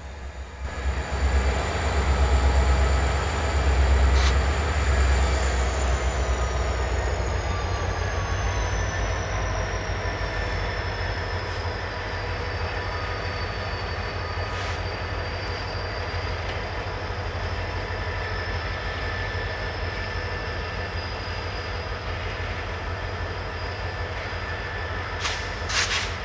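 Two Canadian Pacific diesel locomotives passing with an intermodal freight train: a steady deep engine rumble, loudest in the first few seconds, over the run of wheels on rail. A thin high whine slowly drops in pitch through the middle, with a few faint clicks from the wheels.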